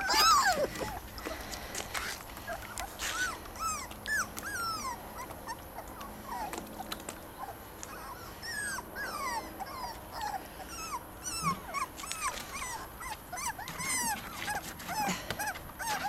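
Several young puppies whimpering and yipping: many short, high, arching cries, one after another, from more than one pup.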